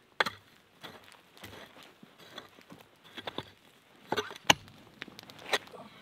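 A Pulaski's adze blade chopping into the dirt and roots around an old stump in irregular strikes, roughly one a second, with the hardest blow about four and a half seconds in.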